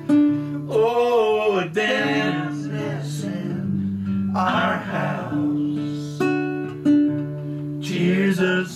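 Acoustic guitar accompaniment, notes plucked and strummed and left ringing, with voices singing long held notes over it.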